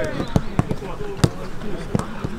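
Footballs being kicked on a grass training pitch: four short, sharp thuds, the loudest about a second in, with players' voices calling in the background.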